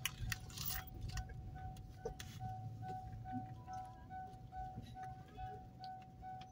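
A faint repeating electronic chime from the car, a single steady tone that settles into short beeps about two to three a second, over a low rumble and a few small clicks.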